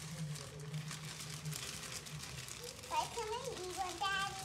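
Plastic marshmallow bag crinkling as it is handled and shaken out over a stainless steel pot, with soft voices about three seconds in.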